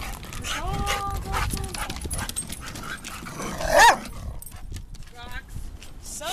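A dog barks once, sharp and loud, about four seconds in, with a shorter rising dog call just after, over light footsteps knocking on the wooden pier boards.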